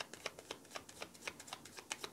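A deck of cards being shuffled by hand: a faint, quick, slightly uneven run of soft card clicks, about seven a second.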